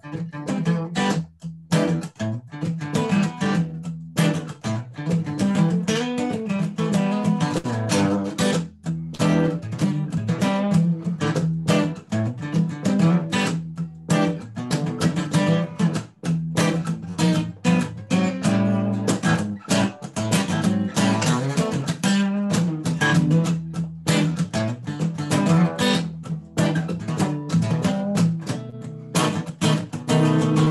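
Solo acoustic guitar jam, played rhythmically with a steady run of low bass notes under crisp strummed strokes. There are a few brief stops.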